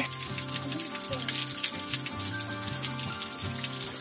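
Water trickling and dripping off an icicle-hung rock ledge at a small frozen waterfall, a steady run of water with many small drips, over soft background music.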